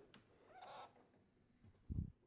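A pet degu giving one short, high-pitched chirp about half a second in, followed by a brief low thump near the end.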